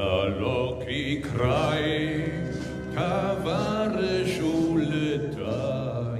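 A man sings slow phrases with long held, wavering notes, accompanied by a military band.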